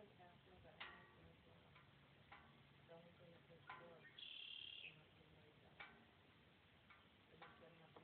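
Near silence: faint outdoor ambience with sporadic faint clicks or chirps and a brief higher buzz about four seconds in.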